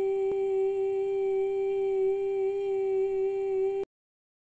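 A steady, single-pitched electronic test tone of the kind that runs with TV colour bars, with a faint click shortly after it begins. It cuts off abruptly near the end.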